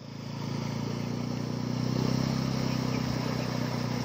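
Small boat's outboard motor running steadily at a constant low drone, swelling a little about halfway through.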